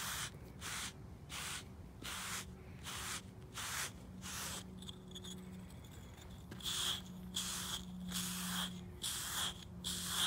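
A Slick 'N Easy grooming block scraping in short strokes over a horse's thick, shedding winter coat, about two strokes a second, with a pause of about two seconds near the middle before the strokes resume. A low steady hum runs underneath.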